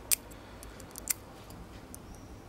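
A handful of small, faint clicks from fingers handling the tiny parts of a bicycle valve-cap LED light: the LED's thin wire lead against its little circuit board. The sharpest clicks come right at the start and about a second in.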